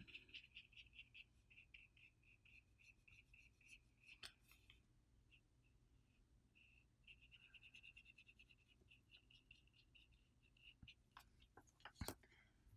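Near silence with a faint, rapid ticking, about four to five ticks a second, that stops for about two seconds midway and then resumes, plus a few soft clicks.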